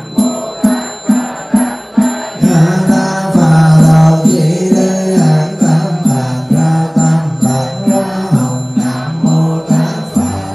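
Buddhist monk chanting a sutra over a microphone in a low, sustained voice, kept in time by a wooden fish (mõ) struck evenly about twice a second.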